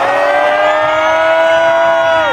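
One long held note through the festival sound system, rising slowly in pitch, over a steady lower tone.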